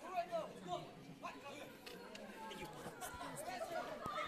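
Faint chatter of several voices talking at once, with no single speaker standing out.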